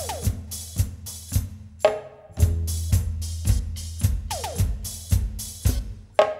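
Live band playing an instrumental song intro: an electronic drum kit beat of about two strokes a second over a sustained low bass, with a short break about two seconds in and falling pitch sweeps at the start and again about four seconds in.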